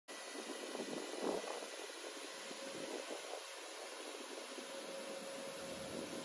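Battery-powered P190D ride-on road vacuum sweeper running as it drives along: a steady hiss with a faint constant tone from its motors and fan.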